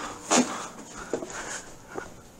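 Brief breathy laughter, mostly one short burst about a third of a second in, then fainter breathing.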